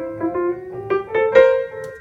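Piano playing a short line of single notes that climbs chromatically upward, skipping the G sharp, with the loudest note struck near the end.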